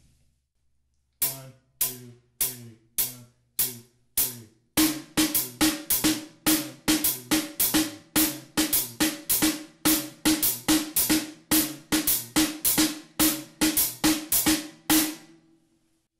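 Drum kit playing a 2-over-3 feel. It starts about a second in with single strokes evenly spaced about every 0.6 s. From about five seconds in, a denser syncopated pattern of cymbal and drum strokes with deep bass drum thumps joins, and it stops about a second before the end.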